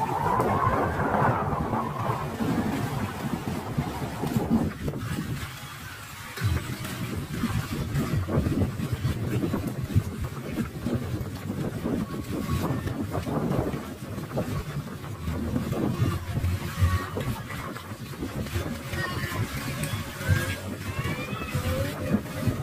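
Wind buffeting the microphone by the open sea, uneven and gusty, swelling and dropping every few seconds.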